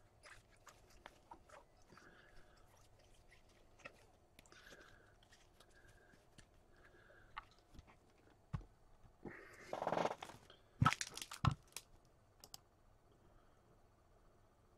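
Trading cards being handled: faint flicks and rustles as a stack of cards is thumbed through, then a louder rustle about nine seconds in and two sharp taps a second or so later as the cards are set down on the table.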